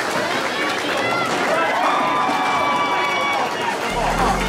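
Several people's voices shouting and calling out over general hubbub, with drawn-out held calls a couple of seconds in.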